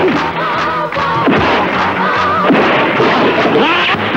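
Film soundtrack: background music with a wavering melody, cut by several sharp, loud impact sound effects about a second apart.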